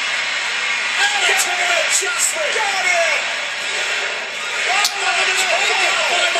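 Wrestling broadcast audio: a steady arena crowd roar with voices rising over it, and a few sharp thumps of bodies hitting the ring, the loudest near the end.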